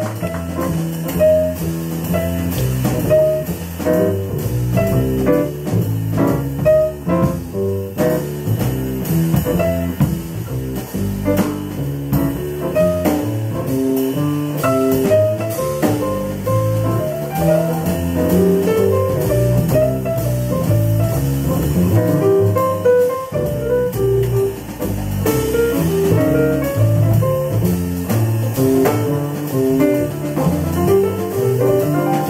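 A small jazz band playing an instrumental passage, with double bass and piano among the instruments.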